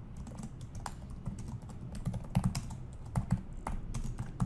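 Typing on a computer keyboard: a run of quick, irregular keystrokes that grow denser and louder about halfway through.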